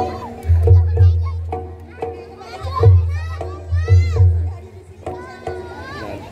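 Children playing and squealing on a trampoline, with high rising and falling shrieks in the middle, over steady background music. Three deep thuds, one early, one near the middle and one a second later, are the loudest sounds.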